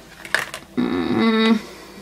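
A woman's brief wordless vocal sound, a held hum-like tone under a second long, about a second in, after a light click of handling.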